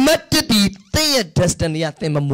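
Speech only: a man preaching into a handheld microphone.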